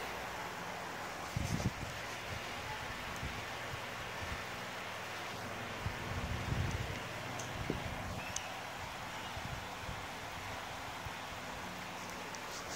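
Steady hiss of background noise with no clear source, broken by a few soft low thumps about a second and a half in and again around six to seven seconds in.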